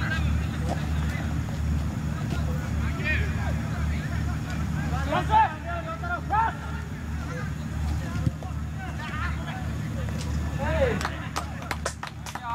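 Footballers' shouted calls ringing out across the pitch during open play, short and scattered, over a steady low rumble. A few sharp knocks come near the end.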